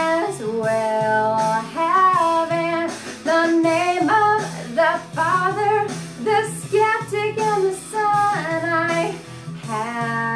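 A woman singing a lead vocal line with long held notes, over an instrumental backing track.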